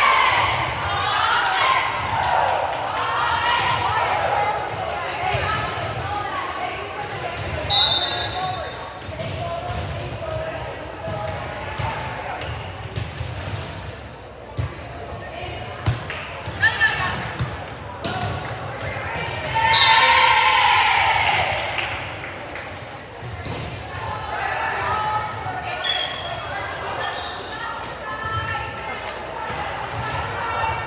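Indoor volleyball play in a reverberant gymnasium: players and spectators calling out and cheering, with sharp slaps of the ball being hit, several of them together about two thirds of the way through.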